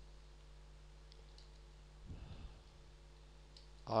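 Faint computer-keyboard keystroke clicks over a steady low electrical hum, with a soft low sound about halfway through.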